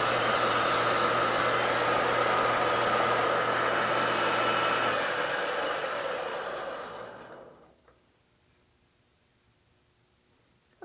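Metal lathe running with emery cloth rubbing on the spinning steel shaft to polish it: a steady harsh hiss over a low hum. The high hiss stops about three seconds in, and the remaining sound fades away, silent by about eight seconds in.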